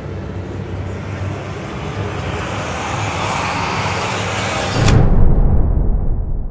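Cinematic sound design: a rushing noise swell that builds for about five seconds, then a sudden deep boom whose low rumble lingers as the higher sounds die away.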